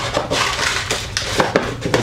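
Suture packets rattling and rustling as they are pulled by hand from cardboard dispenser boxes on a wall rack, with several sharp clicks.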